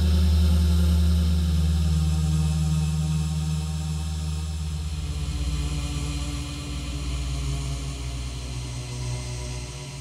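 A low, sustained drone of dark ambient music: deep steady tones with no drums or beat, slowly getting quieter.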